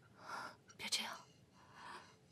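A man sobbing: three breathy, gasping sobs, the middle one the loudest.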